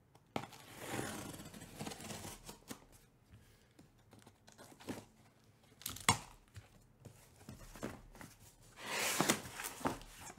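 A utility knife slitting the packing tape on a corrugated cardboard case, with tape tearing and cardboard scraping. A sharp click comes about six seconds in, and a louder rip of tape near the end as the flaps are pulled open.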